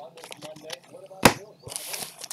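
A sharp knock about a second in, then a foil trading-card pack wrapper crinkling as it is picked up and opened near the end.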